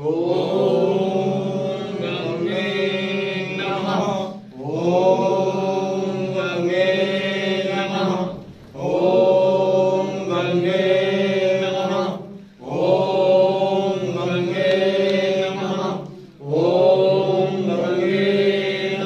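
Hindu devotional chanting: a sung mantra-like line repeated in phrases of about four seconds, each separated by a brief pause.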